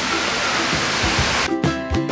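Steady rushing water noise that cuts off about 1.5 seconds in, when background music with plucked strings starts.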